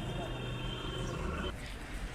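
Busy outdoor street ambience: indistinct voices of people around, over a steady low hum of vehicle engines that drops away about one and a half seconds in.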